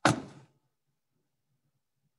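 A single sudden bang, like a knock or thud, dying away within about half a second.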